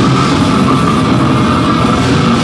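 Heavy metal band playing live at full volume: distorted electric guitars over a drum kit in a dense, unbroken wall of sound.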